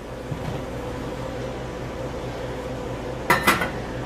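A steady hiss, then about three and a half seconds in a small stainless steel pot clatters down onto the metal grate of a lit gas stove burner.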